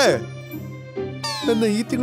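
Cartoon dialogue over a steady background music bed, with a descending whistle-like sound effect gliding down in pitch in the second half, as a voice starts speaking again.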